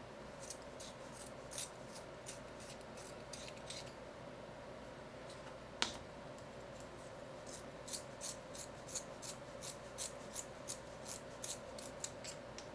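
Colored pencil being turned in a small handheld metal sharpener, the blade shaving the wood in short scraping strokes that come faster in the last few seconds. One sharp click about halfway through.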